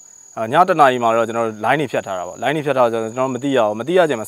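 A man talking to the camera, his speech starting after a brief pause, over a steady high-pitched drone of insects from the surrounding forest.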